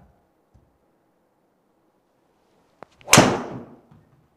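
A driver striking a golf ball off a tee: one sharp, loud crack about three seconds in that rings out briefly in the small hitting bay, preceded by a faint tick.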